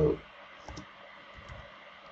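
A few faint keystrokes on a computer keyboard as a short chat message is typed, scattered clicks a fraction of a second apart.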